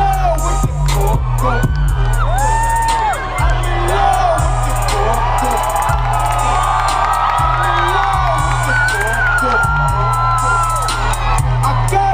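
Live reggae-rock band playing an instrumental passage with booming bass and drums, while the crowd cheers and whoops over it.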